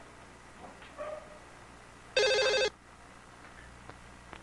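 A telephone ringing: one short ring of about half a second, a little over two seconds in.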